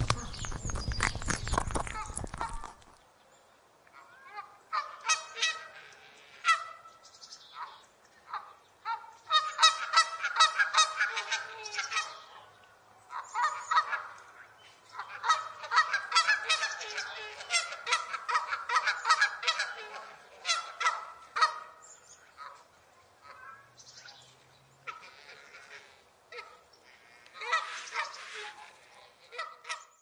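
Close, rapid crunching of a rabbit chewing grass, cut off about three seconds in. Then a flock of Canada geese honks repeatedly in bouts, with short quiet gaps between them, until near the end.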